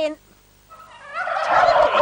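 A performer's voiced turkey gobble for a turkey puppet: a rough, noisy gobble that starts faintly just under a second in and swells to its loudest near the end.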